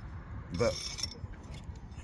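A man's voice saying one short word, with only a faint background otherwise.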